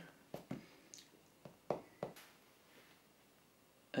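Light taps of fingertips pressing on a smartphone's glass screen: a handful of short, faint taps in the first two seconds.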